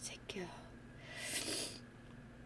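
A woman's brief soft laugh, followed about a second in by a breathy whisper.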